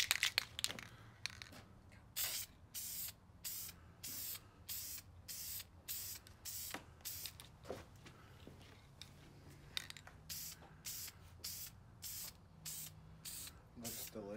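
Aerosol can of high-temperature spray paint hissing in short separate bursts, about two or three a second, with a pause of a couple of seconds midway: a light first coat being sprayed onto an exhaust header.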